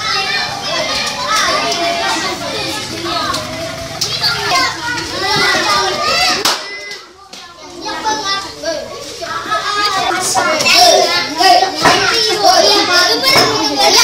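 Many children's voices talking and calling out at once, a classroom hubbub. It dips briefly a little past halfway, then comes back louder.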